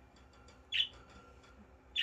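A budgerigar gives one short, high chirp a little under a second in, against faint room tone.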